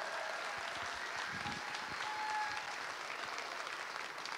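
Congregation applauding steadily, an even wash of many hands clapping, well below the level of the speech around it.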